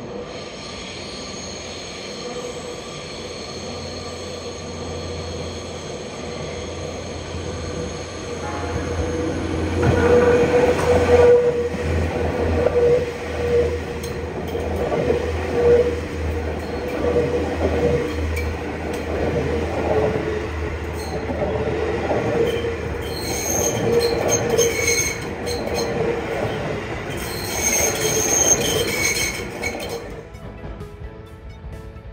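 A Seibu Railway electric train hauling a rake of cars comes out of a tunnel and passes close by at low speed, its running noise growing louder over the first ten seconds and then staying loud. High, steady wheel squeal from the rails runs over the rumble of the cars.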